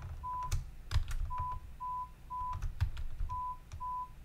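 Short 1000 Hz pure-tone beeps from an audiometer simulator presenting its pulsed stimulus, in sets of three about half a second apart. Sharp mouse clicks fall between the sets as the masker level is stepped up.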